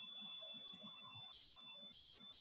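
Very quiet room tone with a faint, steady high-pitched whine that breaks off briefly a few times.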